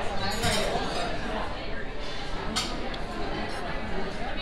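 Chatter of many diners in a restaurant dining room, with a single sharp clink about two and a half seconds in.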